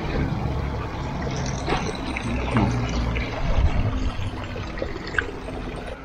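Water from a stone fountain pouring and trickling steadily into its basin.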